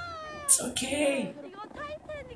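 A young woman's high-pitched, whining squeals of fright, her voice gliding downward, with a short sharp hiss about half a second in.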